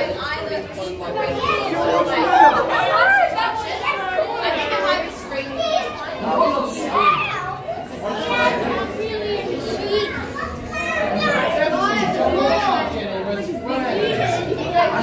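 Children's voices chattering and calling out excitedly, overlapping with other visitors' talk, with the echo of a large indoor hall.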